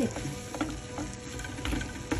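A utensil stirring and scraping white-chocolate-coated macadamia nuts around a frying pan, with scattered light clicks and scrapes against the pan.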